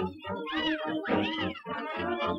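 Orchestral cartoon score playing under two meow-like cries, each rising and falling in pitch, about half a second and a second and a quarter in.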